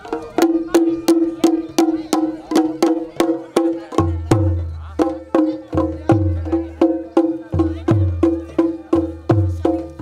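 Folk-style music: a fast, even clicking percussion beat, about three strikes a second, over a steady held tone. A deep bass beat comes in about four seconds in and repeats roughly once a second.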